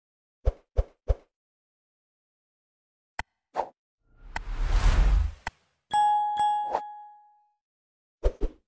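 Animated channel-intro sound effects: three quick pops, then a click and another pop, then a whoosh with a low rumble. After that come a click and a bell-like ding that rings out for about a second and a half, with two more clicks over it.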